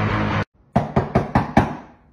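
Background music cuts off about half a second in, then knuckles knock on a stainless-steel refrigerator door about five times in quick succession.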